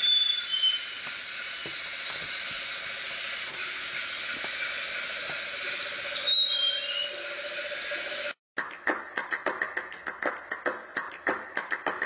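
A steady hiss with two short falling chirps runs for about eight seconds. Then comes a fast, irregular run of light taps, several a second, as a plastic Littlest Pet Shop toy figure is tapped along a wooden floor.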